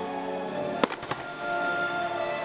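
Music with long held tones, over which a firework bursts with a sharp bang a little under a second in, followed by a weaker crack just after.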